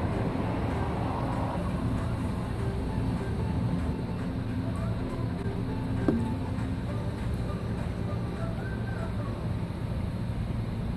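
Steady low hum of city street traffic, with a brief falling whine about six seconds in.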